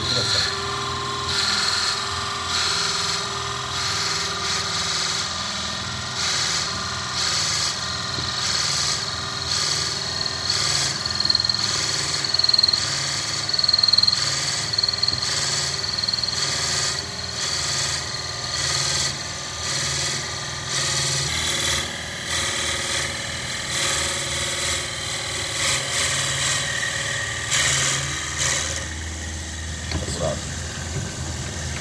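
Wood lathe running while a twist drill bit, fed from the tailstock, bores into a spinning wooden pen blank: a steady high whine with a cutting hiss that comes in repeated pulses as the bit is pushed in and drawn back to clear chips.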